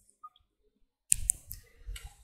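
A few sharp clicks from a computer mouse a little over a second in, after a second of near silence, with faint room noise behind them.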